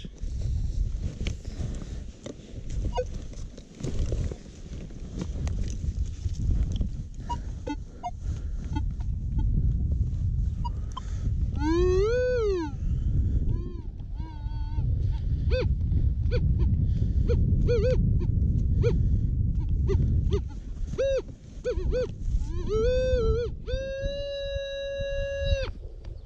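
Spade digging into field soil with scattered scrapes and knocks, then a Minelab X-Terra Pro metal detector's audio tones as its coil passes over the hole: one rising-and-falling tone about halfway through, several short beeps, and near the end a long steady tone from its pinpoint mode.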